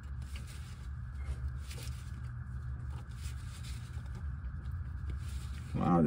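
Faint rustling and scraping of a nitrile-gloved hand turning a new spin-on oil filter to hand-tighten it, over a steady low hum.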